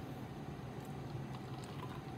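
Quiet room tone: a steady low hum, with a few faint light clicks as foam cups are handled on the lab bench.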